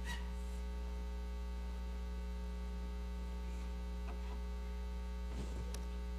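Steady electrical mains hum with a few faint, brief clicks.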